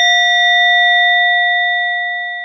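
A struck Buddhist bowl bell ringing out with a clear, steady, several-toned ring that slowly fades. It marks one prostration after a Buddha's name is invoked.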